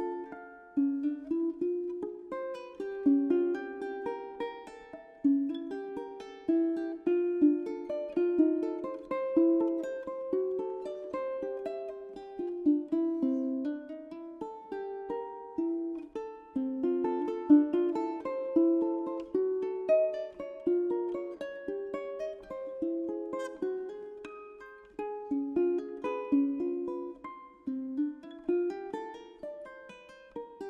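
Solo ukulele playing a slow adagio: a steady flow of plucked single notes and chords, several a second, each ringing briefly.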